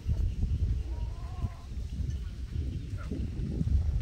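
A steady low rumble, with a short wavering animal call like a bleat about a second in.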